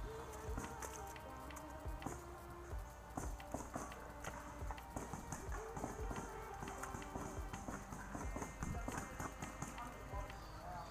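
Quick footsteps over dirt and leaves, with many short sharp pops and clicks scattered through, typical of paintball markers firing across the field.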